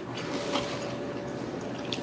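Wet chewing and mouth sounds from people eating, with a few light clicks of forks on plates.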